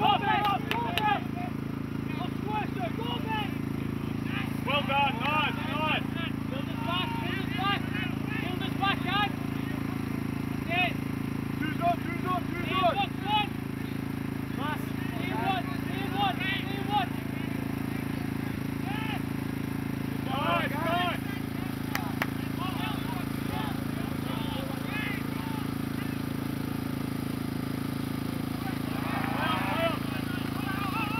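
Distant voices shouting and calling on and around a rugby pitch during open play, in short bunches every few seconds, over a steady low hum.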